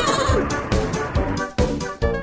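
Cartoon background music with a beat, over a character's wavering, drawn-out vocal cry. The music drops out briefly about one and a half seconds in.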